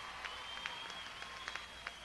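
Concert audience applauding sparsely, separate hand claps standing out over a faint hiss, with a steady high tone held above them.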